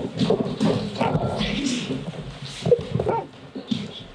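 A dog making a few short whines amid scuffling movement as it is handled.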